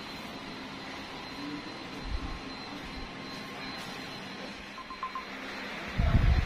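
Quiet room tone with a steady hiss. There is a low bump about two seconds in, and three short, faint beeps about five seconds in, like a phone's keypad tones.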